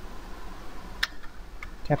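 Computer keyboard keystrokes: one sharp click about halfway, then a couple of fainter taps.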